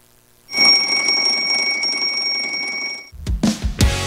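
Alarm clock bell ringing with a fast, steady rattle for about two and a half seconds, starting half a second in and stopping suddenly. Music with a drum beat starts right after, near the end.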